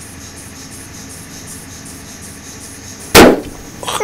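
A loud, sudden bang about three seconds in, over a steady low background, followed by a few shorter, quieter bursts near the end.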